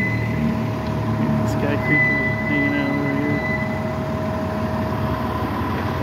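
City street noise: a steady mechanical hum with traffic running underneath, and a voice heard faintly now and then.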